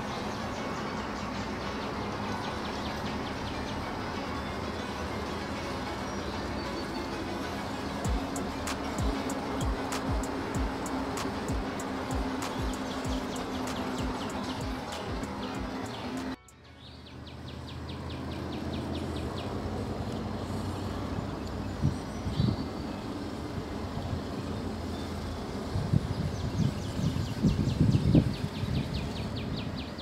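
Background music with a steady beat for about the first half, cutting off suddenly. After it, fast high chirping of wildlife runs in the background, and near the end an Axial SCX6 1/6-scale RC rock crawler's drivetrain sounds in short, louder bursts as it climbs over rocks.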